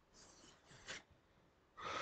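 A man's faint breathing close to the microphone: a soft breath, a short sharper one just under a second in, then a louder intake of breath near the end.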